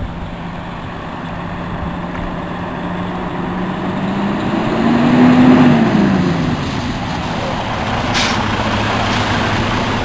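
Freightliner Cascadia 125 tractor's diesel engine pulling as the truck drives up and past. Its note rises to a peak about halfway through, drops sharply and settles to a lower steady note. A short hiss of air comes near the end.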